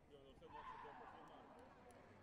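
Faint arena crowd murmur, with one drawn-out shout that starts about half a second in and fades over about a second.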